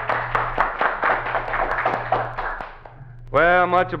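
A 1950s country band, with guitars, piano, fiddle and bass, plays the last bars of a song with a steady strummed beat and fades out a little under three seconds in. A man's voice starts right after.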